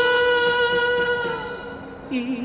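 A woman singing into a handheld microphone, holding one long note that fades out about three-quarters of the way through, over a karaoke backing track.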